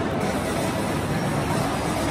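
Tamiya Mini 4WD cars running on a plastic multi-lane track: a steady buzzing clatter of small electric motors and rollers, with no break.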